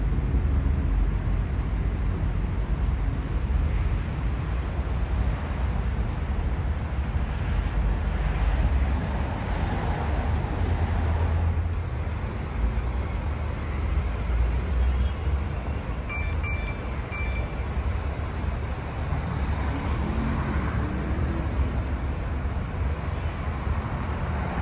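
A moving car's steady low rumble, with a dull noise haze and no distinct events.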